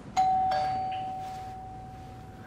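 Two-tone doorbell chime: a ding and then a slightly lower dong about a third of a second later, both notes ringing on and slowly fading.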